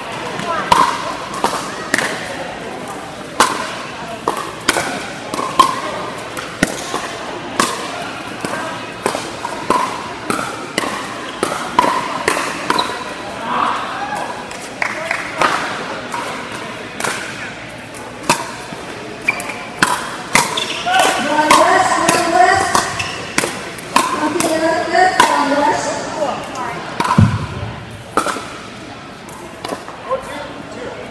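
Pickleball paddles hitting the hard plastic ball in rallies, a stream of sharp, irregular pops from this and neighbouring courts in a large indoor hall. Background chatter from players and spectators grows louder about two-thirds of the way through.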